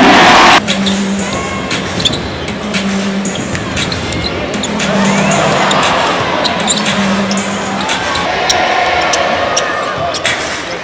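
Live basketball game sound at an arena's courtside: a ball bouncing on the hardwood court and sneaker squeaks over crowd noise and arena music. A loud burst in the first half-second is the loudest moment.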